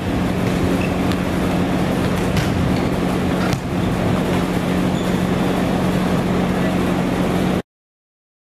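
Steady loud hum filling a large indoor gym, with a few sharp smacks of volleyballs being hit and passed in a drill. The sound cuts off suddenly near the end.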